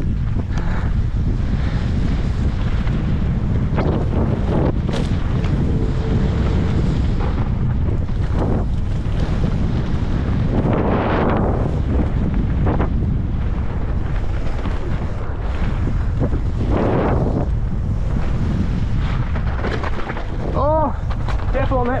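Heavy wind buffeting a helmet-mounted camera's microphone as a mountain bike descends a gravel trail at speed, with tyre and trail noise underneath and a couple of louder swells around the middle. A short vocal sound from the rider comes near the end.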